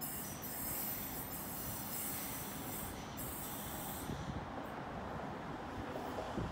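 Sydney Trains Waratah electric train pulling away, with a steady rumble and several high-pitched tones that die away about four seconds in as it recedes.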